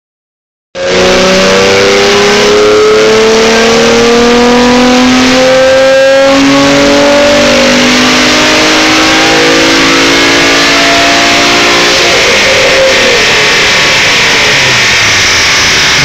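Infiniti G35's 3.5-litre V6 revving hard on a chassis dyno, very loud, its pitch climbing steadily for about eleven seconds in a single pull, then easing off about twelve seconds in.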